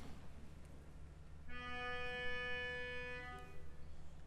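A melodica sounding one steady, reedy held note for about two seconds, starting about a second and a half in: the starting pitch given to an a cappella group before it sings.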